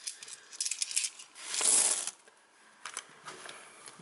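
Small metal coins clicking and clinking against each other as a handful of 20p pieces is picked through and sorted by hand, in quick light clicks, with a short louder rush of noise about a second and a half in, and a few more scattered clicks near the end.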